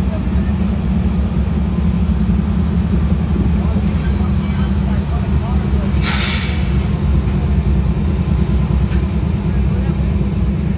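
Union Pacific diesel locomotive's engine running with a steady, heavy low rumble close by, with a short burst of hiss about six seconds in.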